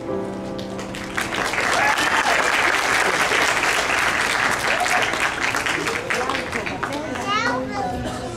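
The last notes of a children's song with music, then audience applause swelling about a second in, with children's voices and chatter over the clapping, easing off near the end.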